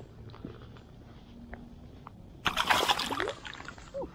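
Shallow water sloshing gently around a trout held by hand, then a burst of splashing about two and a half seconds in as the released fish kicks free and swims off, lively.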